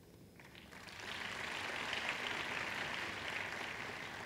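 Congregation applauding, the clapping building up about a second in and easing off near the end.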